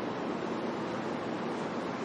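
A steady, even rushing noise with no speech and no distinct events.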